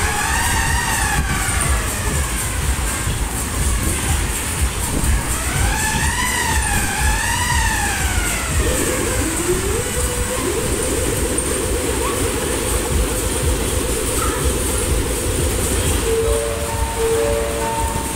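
Fairground ride sound effects over a steady low rumble: two siren-like wails that rise and fall, then a fast warbling tone held for several seconds, ending in a few short steady beeps.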